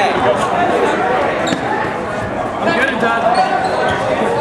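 Players' voices carrying through a large gymnasium, with a few sharp thuds of rubber dodgeballs bouncing on the hardwood floor.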